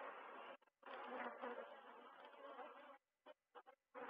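Faint, steady hum of a honeybee colony swarming over the frames of an opened hive. Its pitch sits around the bees' wingbeat. The sound cuts out briefly about three seconds in.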